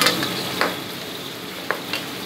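Food frying in a pan over a gas flame with a steady sizzle, broken by four sharp knocks of a knife against a plastic cutting board.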